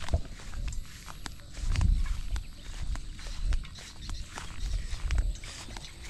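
Footsteps of a person walking outdoors, heard as a series of irregular low thuds with rumble from the handheld camera, and scattered faint clicks.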